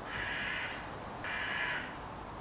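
A bird calling twice: two harsh calls, each a little over half a second long, about a second apart.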